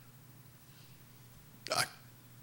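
Quiet room tone during a pause in a man's speech, broken near the end by one short spoken word, "I", that starts with a catch in the voice.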